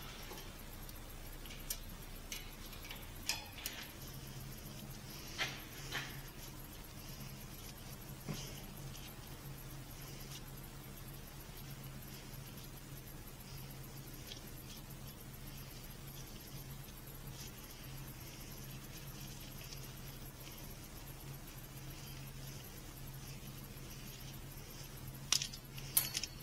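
Light metallic clicks and taps from a steel brake line and a small hand tool being handled, sharpest in the first few seconds and fainter later. A steady low hum runs underneath from about four seconds in.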